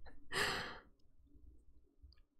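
A woman's breathy exhale, like a sigh, into a close microphone. It lasts about half a second near the start and is followed by quiet.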